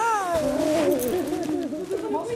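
Women's excited, high-pitched squeals of delight during a hug: one long cry falling in pitch at the start, followed by wavering, drawn-out vocal sounds.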